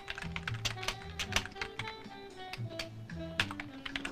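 Typing on a computer keyboard: a quick, irregular run of key clicks, over soft background music.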